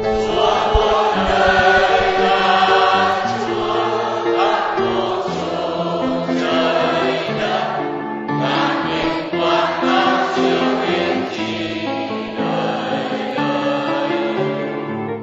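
A choir singing a slow hymn in held chords that move every second or so.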